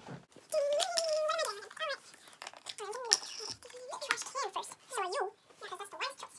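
A child's high-pitched voice vocalising and squealing without clear words, ending in a laugh, with a few light clicks and taps.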